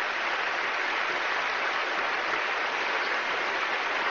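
Large audience applauding steadily in a hall.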